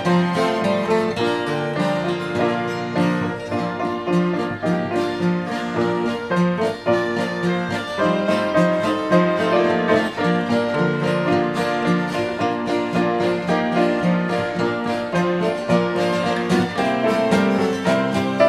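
Live instrumental tune on fiddle, strummed acoustic guitar and piano, played together to a steady beat.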